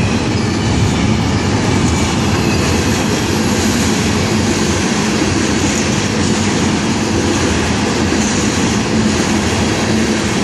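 Florida East Coast Railway freight train rolling past close by, a long string of tank cars, its wheels running steadily and loudly on the rails.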